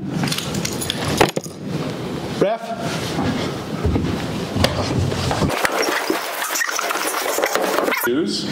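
Indistinct voices mixed with scattered clicks and knocks.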